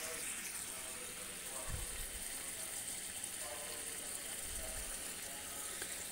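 Thin egg-curry gravy simmering in a pan on the stove, bubbling with a steady, quiet hiss.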